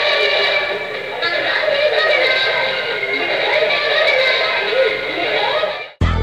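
Music carrying a high, wavering sung or synthetic voice with almost no bass. It fades out suddenly at the very end.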